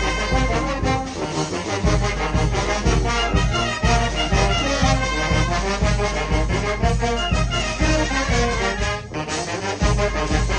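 Youth wind band playing live: flutes, soprano and alto saxophones, trumpets, trombones and sousaphones, over a steady low bass pulse. A short break comes near the end, then the band comes back in.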